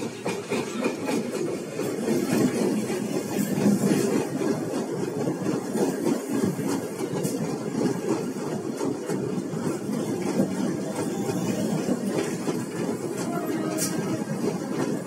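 Passenger coaches of the 12379 Jallianwala Bagh Express running past at close range: a steady rumble and rattle of wheels on rail, with faint clicks over the joints.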